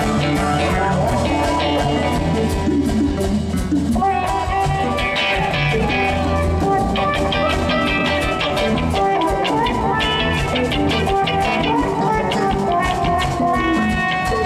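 Funk band playing live: electric guitar over bass and a drum kit.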